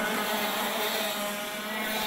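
Racing karts' 125 cc IAME X30 two-stroke engines running at speed on track, a steady buzzing engine sound.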